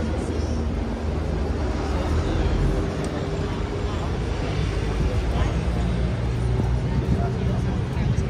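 A steady low engine drone, with people talking in the background.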